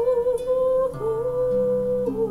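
A woman's singing voice holds long notes with a gentle vibrato, accompanied by a wooden lever harp plucked by hand. Low harp notes enter about a second in and again shortly after.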